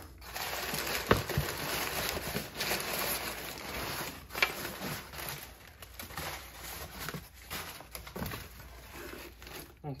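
Crumpled kraft packing paper rustling and crinkling as hands dig through it in a cardboard box, busiest in the first half, with a couple of sharper crackles about a second in and again about four and a half seconds in.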